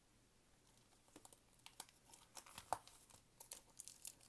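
Foil wrapper of a 2000 Topps Team USA basketball card pack crinkling faintly as it is handled and worked open at the crimped top. Scattered light crackles start about a second in and grow more frequent.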